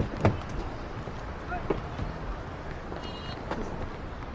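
Two sharp knocks about a third of a second apart, then a low, steady outdoor background rumble with a few faint scattered sounds.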